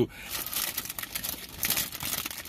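Clear plastic bag crinkling as it is handled, with a large cookie inside: an irregular, crackly rustle.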